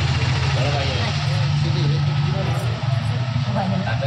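A steady low mechanical hum under faint voices.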